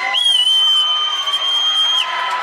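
A shrill whistle blown once and held at one steady pitch for nearly two seconds, wavering up briefly at the start and then stopping abruptly, over faint crowd noise.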